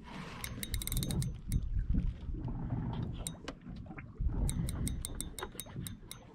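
Spinning reel clicking in quick runs as a hooked nurse shark is reeled in, over a low rumble.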